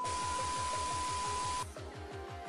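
Edited transition sound effect: a static-like hiss with a steady high beep over a fast pulsing low bass, both cutting off suddenly about one and a half seconds in and leaving quieter background music.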